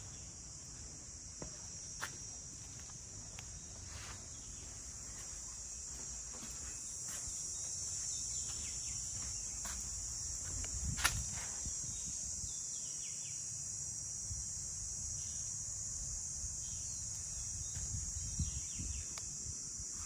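Steady high-pitched insect chorus, with a few light taps, the sharpest about halfway through.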